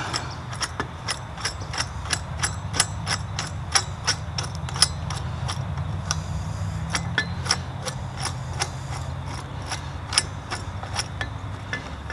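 Quick-attach adjusting screw on a UHI UME12 mini excavator being wound out by hand, its threaded pin ticking and clicking metal on metal about two to three times a second as it draws the coupler mount onto the attachment's second pin. A low steady hum of the digger's idling engine runs underneath.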